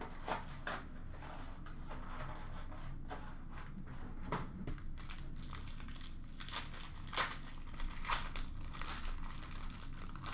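Foil wrapper of a super jumbo pack of football trading cards crinkling and crackling as it is handled and torn open, with the sharpest crackles in the second half.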